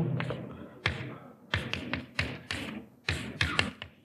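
Chalk tapping and stroking on a blackboard as symbols are written: a string of sharp taps that come in quick little clusters.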